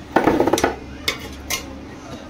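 Metal ladle scraping and clinking against metal cooking pots: a short clatter at the start, then two sharp clinks.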